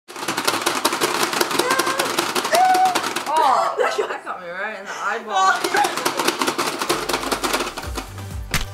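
Pie Face game's turning handle cranked with rapid ratcheting clicks under girls' voices, then wavering squeals and laughter; music comes in near the end.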